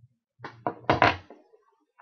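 Four quick knocks, the last two loudest, about a second in.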